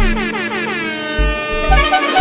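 Hip-hop DJ mix transition: a horn-like DJ sound effect slides steadily down in pitch over heavy bass hits. Near the end, the next track's beat comes in.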